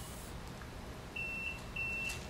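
Electronic beeper of a digital tire-air vending machine giving two short, high, even beeps about half a second apart, starting about a second in, as its display shows the tire's pressure reading.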